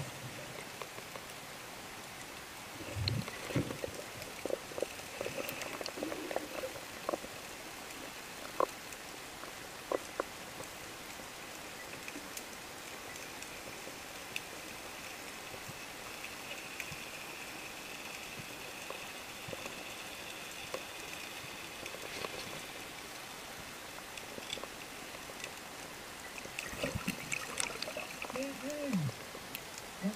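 Faint underwater ambience picked up by a diver's camera: a steady hiss with scattered sharp clicks and a short low rush about three seconds in. A muffled voice-like sound comes in near the end.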